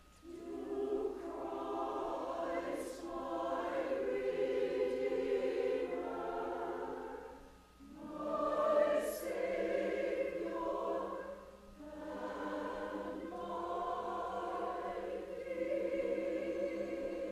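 Mixed church choir of men's and women's voices singing in sustained phrases, with short breaks between phrases near the start, about eight seconds in and about twelve seconds in.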